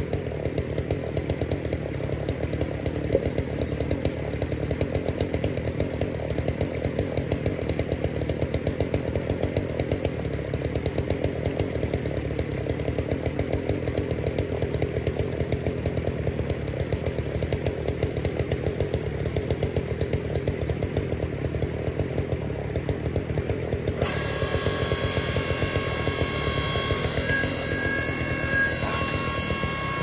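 Forest Master electric log splitter's motor and hydraulic pump running steadily with a fast even pulse. About four-fifths of the way through, a higher steady whine joins in.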